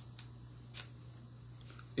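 A pause in speech: faint room tone with a steady low hum, two soft clicks in the first second, and a faint breath just before talking resumes.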